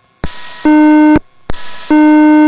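Police radio alert tone: a click and a burst of static as the channel keys up, then a loud, low, buzzy beep about half a second long. The pattern repeats once, the second beep starting just at the end.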